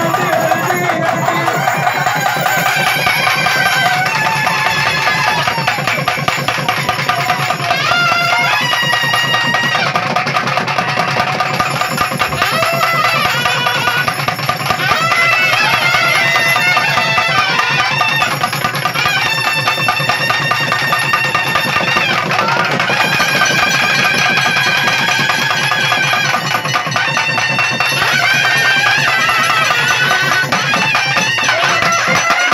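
Naiyandi melam temple band playing: nadaswaram-type reed pipes carrying long, bending melodic phrases over fast, dense thavil drumming, the music that accompanies the trance dance.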